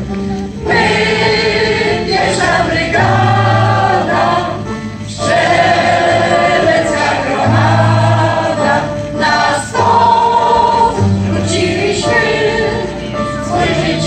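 A choir of older singers, mostly women, singing a Polish soldiers' song to electronic keyboard accompaniment, with steady held bass notes under the sung phrases.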